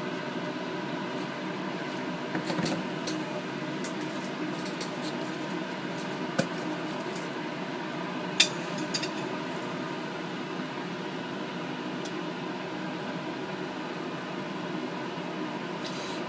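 Steady fan hum, with a few light clicks and taps of metal forceps and plastic culture vessels, loudest about six and eight seconds in.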